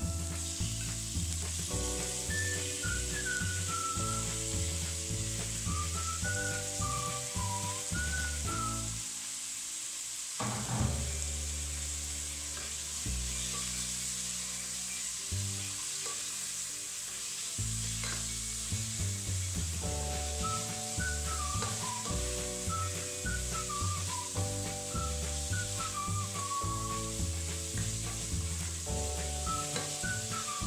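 Shrimp, carrots and onions sizzling in oil in a pot, stirred with a plastic spatula, under instrumental background music with a bass line and a gliding melody.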